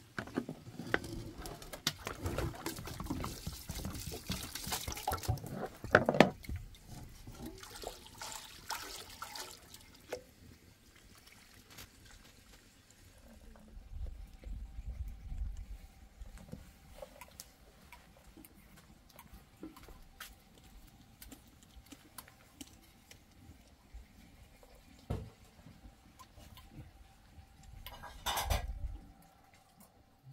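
Water sloshing and pouring as rice is rinsed by hand in a metal bowl, with sharp clinks of the bowl, over about the first ten seconds. After that it is quieter, with a faint steady hum and one knock near the end.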